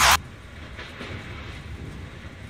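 Steady rumble of strong storm wind, gusts of 70 to 85 mph buffeting the building and the microphone, after a brief loud noise burst at the very start.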